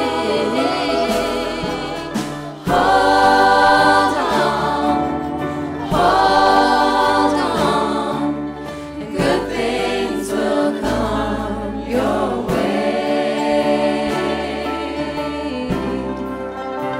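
Music: a gospel choir singing sustained chords over a band, swelling loudly twice, about three and six seconds in.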